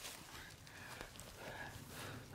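Faint rustling of a freshly stripped handful of moist leaves being held and moved, soft and low after the tearing.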